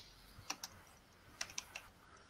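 Faint typing on a computer keyboard: a handful of separate key clicks, two about half a second in and three more about a second later.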